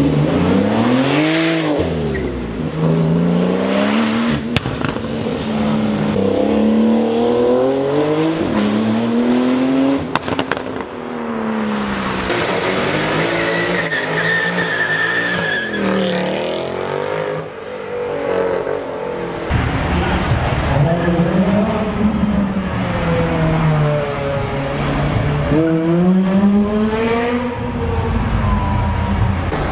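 Several high-performance car engines revving hard and accelerating away, one after another, the pitch climbing and dropping with each gear. In the middle comes a Mercedes C63 AMG's V8 during a burnout, with a steady high tyre squeal as the rear tyres spin and smoke.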